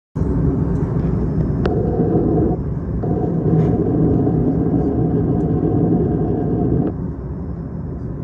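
Jet airliner cabin noise in flight: a loud, steady rush with a faint steady hum-tone over it. A single sharp click comes about a second and a half in, and the noise drops in level near the end.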